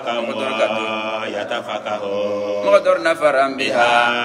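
A man's voice chanting religious text in long, drawn-out melodic lines, with few distinct words.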